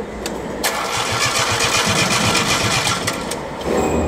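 Isuzu 3AD1 three-cylinder diesel being cranked by its electric starter on a start attempt for a hard-starting engine. A sharp click comes just before the cranking, which begins about half a second in, runs with a fast uneven pulsing for about three seconds and stops shortly before the end.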